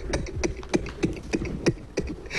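A quick, irregular run of short clicks and taps, about ten in two seconds.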